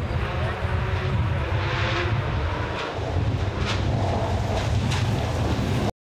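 Rally car engine running at a distance as the car approaches along an unpaved forest stage, under a steady low rumble. The sound cuts off suddenly just before the end.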